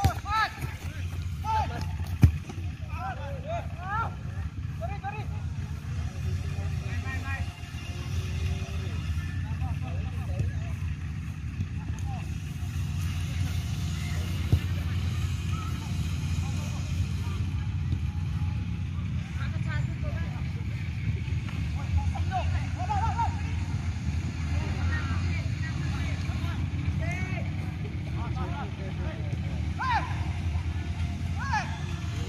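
Scattered shouts and calls from football players and onlookers on an open pitch, over a steady low rumble. There is one sharp knock about two seconds in.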